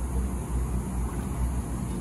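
Steady low rumble with an even hiss over it, with no distinct event standing out.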